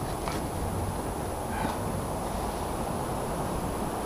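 Steady low rumble of wind on the microphone, with a couple of faint brief taps.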